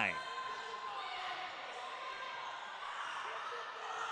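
Basketball game in a gymnasium: a ball being dribbled on the hardwood court over a steady hiss of the hall, with faint voices.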